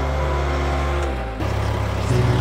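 Case 410 skid steer's diesel engine running steadily with a deep, even drone. Its note shifts about a second and a half in.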